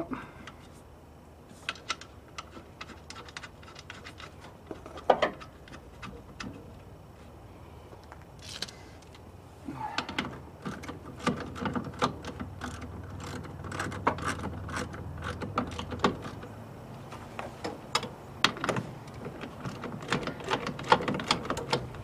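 Scattered metallic clicks and clinks of nuts and hand tools as the master cylinder is fastened onto the brake booster's studs. The clicking is sparse at first and grows busier from about ten seconds in.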